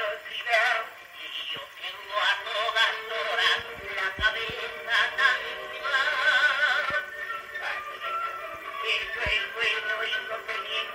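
Portable wind-up acoustic gramophone playing a worn 78 rpm shellac record of a zarzuela duet for two male singers. The sound is thin, with almost no bass, and the words are barely intelligible under the murmur of disc wear, with a few sharp clicks from the record surface.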